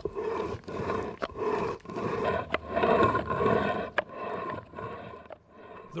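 A hand-held rubbing stone grinding wheat grain against a flat quern stone: rough stone-on-stone rasping in repeated to-and-fro strokes, with a few sharp cracks of grain. It eases off near the end.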